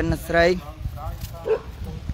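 A dog barks briefly about one and a half seconds in, under a man's voice speaking Khmer.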